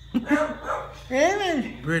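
Voices, with one drawn-out call about a second in that rises and then falls in pitch.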